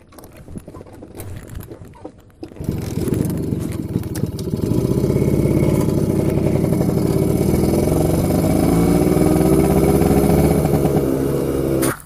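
Motor scooter engine starting about two and a half seconds in, then running and pulling away, its pitch rising a little and then holding steady. It cuts off suddenly just before the end.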